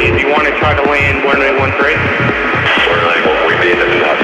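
Tech house music played live through Ableton Live: a steady, evenly pulsing kick-and-bass beat under a synth melody.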